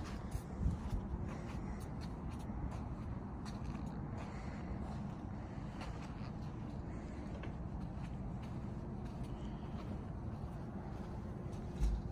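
Steady low background hum with light footsteps and faint handling noise from a handheld phone camera being walked around a parked vehicle, with a soft bump under a second in and another near the end.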